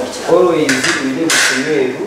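A person speaking, with two short bursts of hiss between words, the louder about one and a half seconds in.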